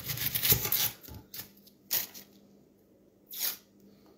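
Kitchen knife cutting into an onion while its dry papery skin is peeled and torn away. There is a dense rustle in the first second, then three short scrapes spaced out through the rest.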